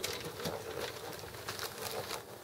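Light clicks and rattles of small fishing tackle being handled, loudest near the start and again near the end, as a sinker weight is unclipped from the rig.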